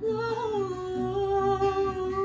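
A woman's voice holding one long wordless note over acoustic guitar; the note wavers slightly as it begins, then holds steady.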